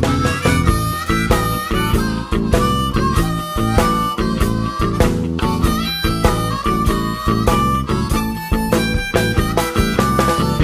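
Harmonica blues: a harmonica playing held notes over a backing band with guitar and a steady beat.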